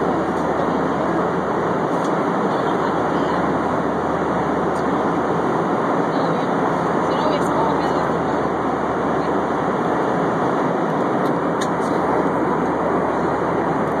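Steady cabin noise of an airliner in flight: an even, unbroken rush of engines and airflow heard from inside the cabin.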